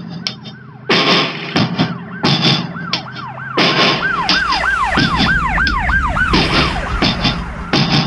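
Emergency-vehicle siren in a fast yelp, rising and falling about three times a second, faint at first, louder and closest about halfway through, then fading. Music with loud, sharp beats plays over it.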